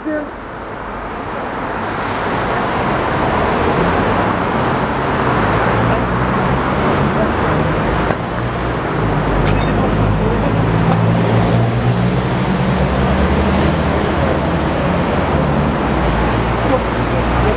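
Road traffic running steadily close by: a haze of tyre and engine noise that builds over the first two seconds and then holds, with a low engine hum growing stronger in the second half.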